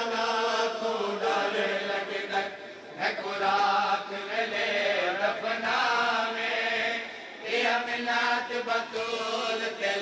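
Amplified male voice chanting a Punjabi noha, a Shia mourning lament, in long held, wavering notes with short breaks between phrases.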